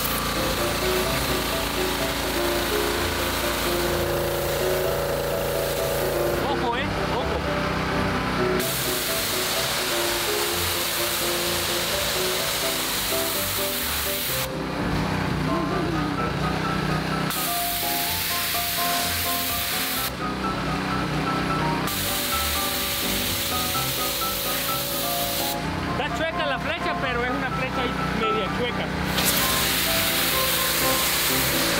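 Background music over the hiss of a pressure washer's spray jet hitting concrete. The spray stops and restarts several times, falling away for a few seconds at a time.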